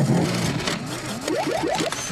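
Electronic noise intro of an indie song: a quick run of short rising pitch sweeps, about four or five a second, over a hiss.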